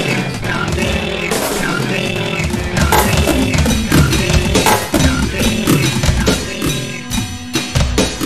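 Instrumental passage of a song with no singing: a drum kit with bass drum and snare hits over a dense backing. The mix thins out near the end, leaving held tones and sparser hits.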